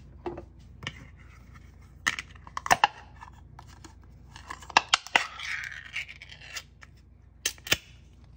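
A ring-pull cat-food can being opened by hand. There are sharp metallic clicks and knocks of the can on a wooden table, then a pop and a scraping peel of the metal lid about five seconds in.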